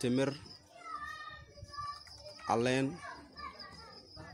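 Voices outdoors: two short, loud calls, one right at the start and another about two and a half seconds in, with fainter voices between them. A thin, steady high-pitched whine runs underneath.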